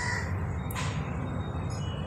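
Pause between spoken sentences: a steady low electrical hum and faint hiss, with one brief hissy rush just under a second in.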